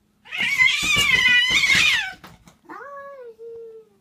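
Domestic cat yowling: one loud, wavering cry about two seconds long, then a shorter, quieter meow that falls in pitch at the end.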